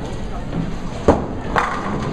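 Bowling alley clatter as a bowling ball rolls down the lane toward the pins, with a sharp knock about a second in and another about half a second later.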